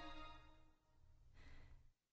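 Near silence in a pause in a musical-theatre song: the last held note fades out in the first half-second, and a faint, soft breath-like sound comes about one and a half seconds in.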